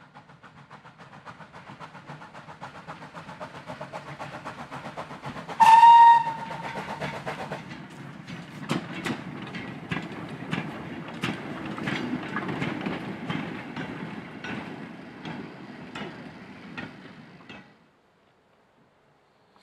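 Lancashire & Yorkshire Railway 'Pug' 0-4-0 saddle-tank steam locomotive hauling a short goods train past. Its regular exhaust beats grow louder, and it gives a short whistle blast about six seconds in. Then come the clicks and clanks of the wagons' wheels over the rail joints, fading near the end.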